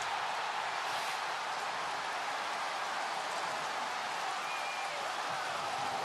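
Large stadium crowd cheering a touchdown, a steady, unbroken wall of voices.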